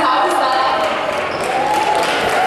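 Voices in a large auditorium, with a few short sharp knocks.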